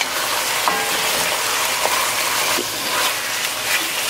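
Short ribs, red wine and tomatoes sizzling steadily in a Dutch oven while a wooden spoon stirs through them; the wine is cooking down.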